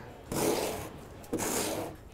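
Steel trowel scraping leftover concrete overlay mix off its blade into a bucket: two scraping strokes of about half a second each.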